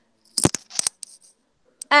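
A few sharp clicks in quick succession about half a second in, the first the loudest.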